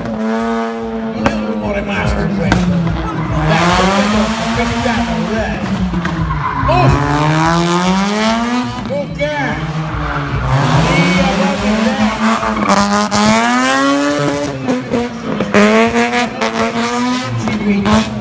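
Car engine revving hard while drifting, its pitch climbing and dropping again and again every few seconds, with tyres squealing as the car slides.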